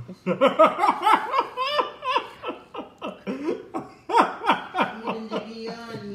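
Laughter: a run of quick, pitched laughing bursts, ending about five seconds in with a held, steady hum.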